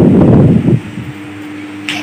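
Wind rumbling on a phone microphone, cutting off under a second in and leaving a faint steady hum.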